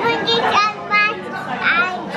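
A toddler's high-pitched voice in several short vocal bursts, over faint background chatter.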